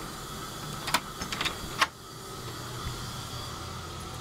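An interior door being opened by its brass knob: a few sharp latch and knob clicks in the first two seconds, over a steady low hum.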